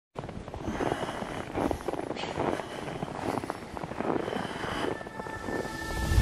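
Footsteps crunching in fresh snow at an unhurried walking pace, about one step a second. Music fades in near the end.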